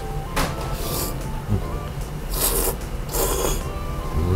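Thick ramen noodles being slurped in about four short hissing bursts, the longest two in the second half, over background music.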